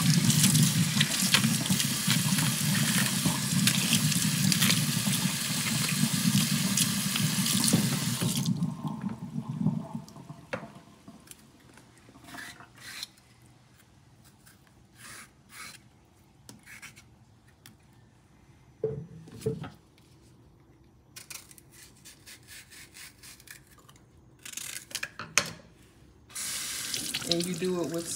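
Kitchen faucet running onto green bananas in a stainless steel sink for about eight seconds, then shut off. In the quieter stretch that follows there are short scattered clicks and scrapes as a small knife peels a green banana, and the tap runs again near the end.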